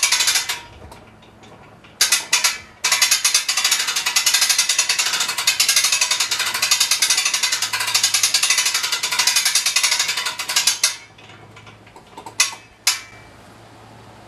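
The ratchet of a hand-worked rope hoist clicking as the slung wooden rowboat is winched on its lines: two short bursts, then about eight seconds of fast, unbroken clicking, and two single clicks near the end.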